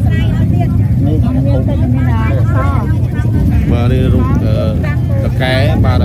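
People talking in Khmer at close range, over a steady low rumble.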